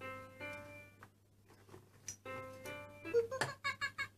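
VTech Tiny Tot Driver toy playing an electronic tune through its small speaker: two short phrases of held notes, the second starting about two seconds in, with a pause between. The toy's recorded voice comes in near the end.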